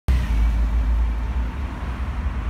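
City street traffic noise: a steady, loud low rumble with an even hiss of passing vehicles.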